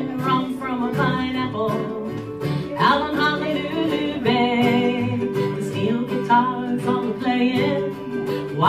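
A Hawaiian-themed song with singing over plucked strings.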